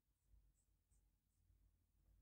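Near silence, with a few very faint, short squeaks of a marker pen drawing on a whiteboard.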